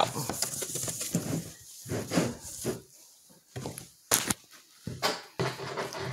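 A damp paper towel wiped around the inside of a plastic storage tote, rubbing on the plastic in short, separate strokes.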